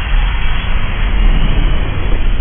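Cinematic rumble sound effect: a loud, steady, deep rumble with a noisy hiss over it, no clear pitch.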